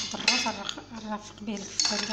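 A utensil clinking and knocking against a stainless steel bowl of chopped onions, with a few sharp strikes, the loudest about a third of a second in and another near the end.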